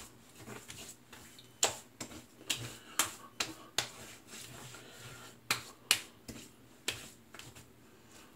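Hands slapping and patting bare skin of the face and neck, a dozen or so sharp irregular smacks: aftershave being applied after a shave.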